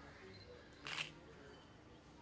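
A single short, sharp noise about a second in, over faint background sounds.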